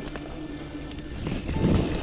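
Background music over mountain bike ride noise: tyres rolling on a dirt trail with small clicks and rattles. The noise swells briefly near the end as a bike goes by close.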